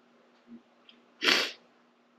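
A man's single short, sharp breath noise about a second in, over a faint steady hum.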